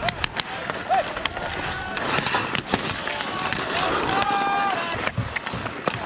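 Ice hockey play on an outdoor rink: skate blades scraping the ice and sharp clacks of sticks and puck, with players shouting, including one longer held call about four seconds in.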